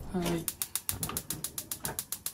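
Gas stove igniter clicking rapidly and evenly, about eight clicks a second, starting about half a second in, as a burner is lit.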